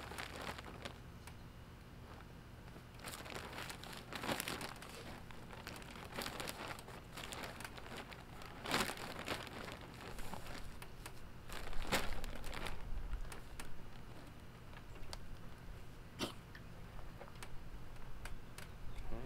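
Plastic bag of raised-bed soil mix crinkling and rustling in irregular spells as it is tipped and soil is poured out, loudest about nine and twelve seconds in.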